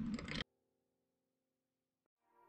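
Low background noise that cuts off abruptly about half a second in, leaving near silence with a very faint, steady musical tone.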